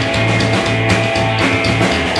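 Live rockabilly band playing with electric guitar, upright bass and drum kit, a steady driving beat with no singing.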